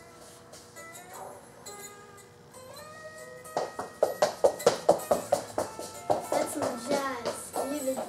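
Schecter E-1 Custom electric guitar being played: a few held notes with a bend, then a quick run of picked notes from about halfway through.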